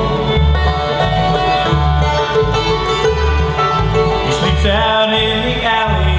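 Live bluegrass band playing, with fiddle, banjo, mandolin, acoustic guitar and upright bass; the bass walks between alternating notes on a steady beat, and the lead line slides in pitch a few times in the second half.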